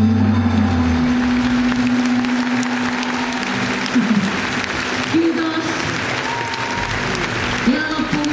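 Audience applauding at the end of a live band's song: the band's bass and chord cut off about a second in, a last held note fades over the next few seconds, and clapping fills the rest. A voice comes over the sound system briefly near the end.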